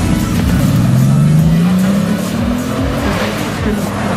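Bugatti Veyron Super Sport's quad-turbo W16 engine accelerating hard, its pitch rising steadily for a couple of seconds before easing near the end.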